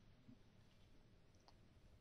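Near silence: faint room tone with a faint click about one and a half seconds in.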